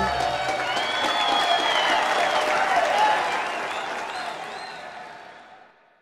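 The music stops and applause with cheering takes over, with a few high whoops, fading away over the last two seconds.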